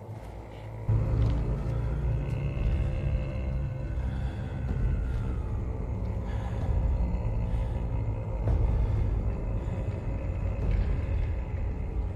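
Dark film soundtrack: a deep low rumble comes in suddenly about a second in and holds, with faint eerie gliding high tones over it.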